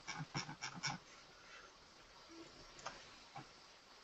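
Faint clicking from a computer keyboard or mouse as a stock list is scrolled: about five quick clicks in the first second, then two single clicks near the end.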